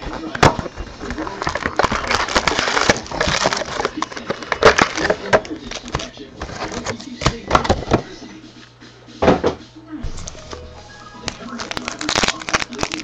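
Foil trading-card pack wrappers being torn open and crinkled: bursts of sharp crackling and rustling, with a brief lull and then a loud crackle about nine seconds in.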